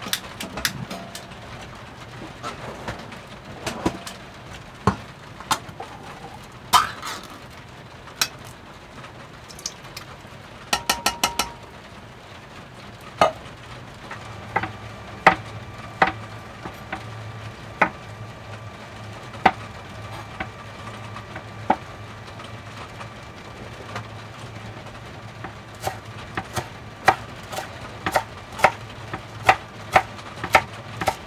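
Food prep at a kitchen counter: scattered knocks of a knife and utensils on a cutting board and worktop, with a quick run of four clicks about a third of the way in. A low steady hum sets in near the middle, and toward the end knife strokes chopping kale on the cutting board settle into a rhythm of about two a second.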